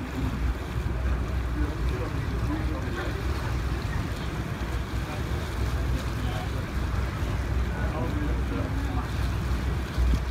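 Steady low rumble and rush of a boat under way on a lake, with wind on the microphone.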